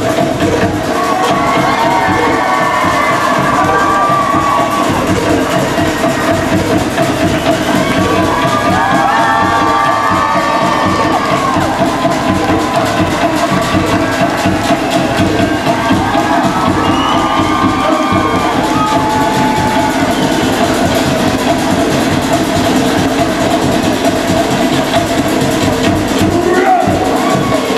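Live show music with drumming, and an audience cheering and whooping in repeated bursts over it.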